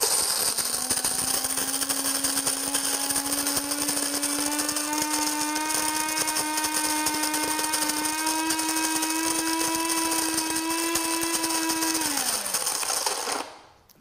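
Cuisinart Supreme Grind (DBM-8) electric burr grinder running, grinding coffee beans at a medium setting: a steady motor whine with a grinding hiss that creeps slightly higher in pitch. Near the end the motor winds down in pitch and stops on its own, the set amount for four cups ground.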